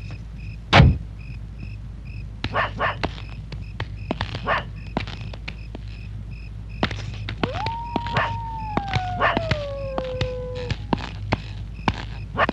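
A heavy thump about a second in, then a dog barking in short bursts and giving one long howl that falls in pitch, over a steady low hum.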